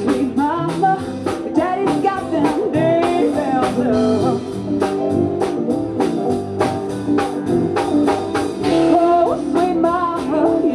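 Live rock band playing: a woman singing over electric guitar with a steady beat.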